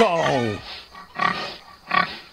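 A man's voice sliding down in pitch for about half a second, then two short, softer noisy sounds.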